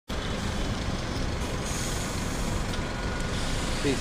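Steady street background noise: a broad traffic rumble and hiss, even throughout.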